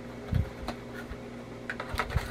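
Light handling noises as small paper packets of powdered drink mix are picked up: a soft thump about half a second in, then a few short sharp clicks and taps.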